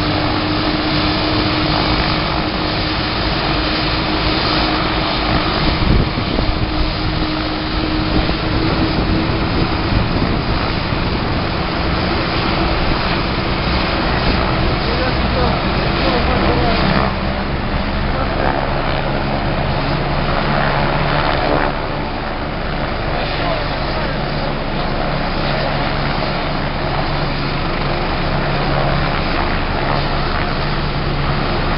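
Loud, steady engine drone with a low hum running throughout, mixed with people's voices.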